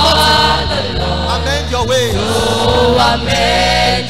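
A large youth choir singing a gospel song in many voices, over low held notes of an accompaniment.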